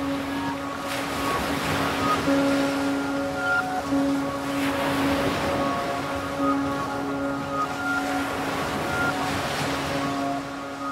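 Ocean surf washing in swell after swell, each surge rising and falling over a few seconds, under a music track of long held notes.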